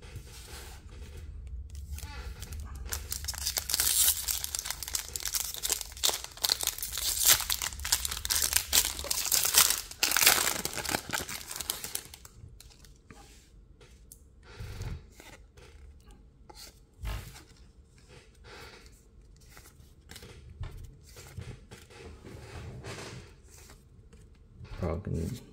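Foil wrapper of a Pokémon booster pack being torn open and crinkled, loud and rustling for about ten seconds. It is followed by softer, scattered clicks of the trading cards being handled and flipped through, with a couple of low thumps.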